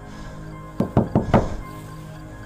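Four quick knocks on a door, bunched together a little under a second in, over background music with steady held tones.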